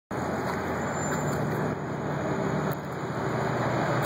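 Steady street traffic noise with no distinct events.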